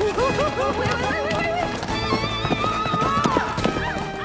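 Horses galloping, with a run of hoofbeats that thickens in the second half, and a horse whinnying, all under film score music.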